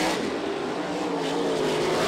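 Engines of non-wing dirt-track sprint cars running at race speed, a steady drone.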